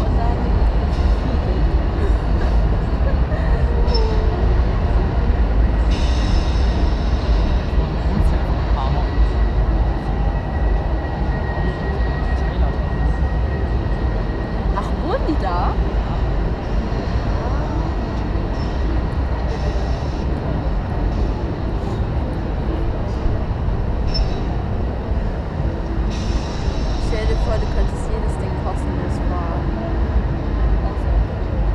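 Steady wind noise rumbling on the microphone high up on a stationary fairground ride, with faint, indistinct sounds of the fairground and voices far below.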